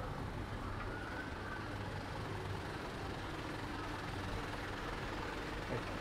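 Steady city street traffic: a low rumble of vehicle engines running, with no single sudden event standing out.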